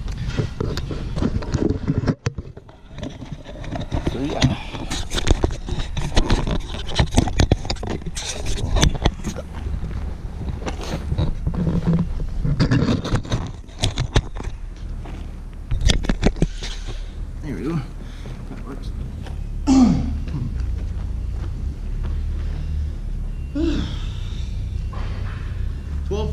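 Jobsite background on a drywall job: many sharp knocks and clatters over a steady low rumble, with a few short, indistinct voices. The knocks thin out in the last third.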